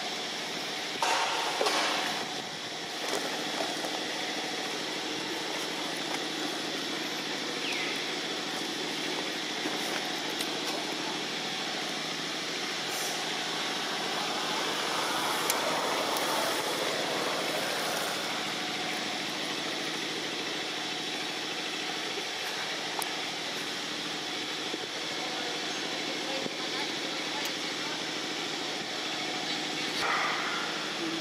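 Steady outdoor background noise: a constant hum with indistinct voices, and a few sharp knocks about a second in.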